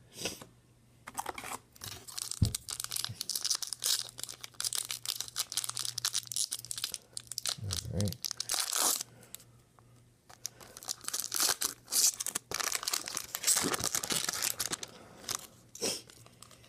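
Foil wrapper of a Magic: The Gathering booster pack being torn open and crinkled, a dense crackling in two long spells with a short lull about halfway through.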